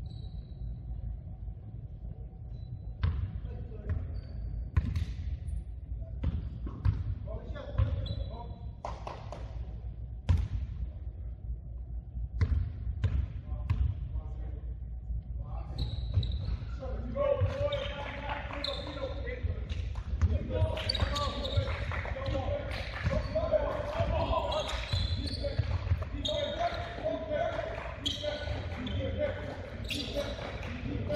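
A basketball bouncing on a hardwood gym floor, with sharp sneaker squeaks, echoing in a large gym. From about halfway, players' and onlookers' voices call out over the play.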